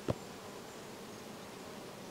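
Faint steady insect buzzing, with one sharp knock just after the start as a brass alcohol burner is handled.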